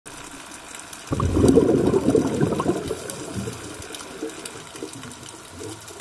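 Underwater bubbling rush of a scuba diver exhaling through the regulator, starting about a second in and fading over the next two seconds, with faint scattered clicks in the background.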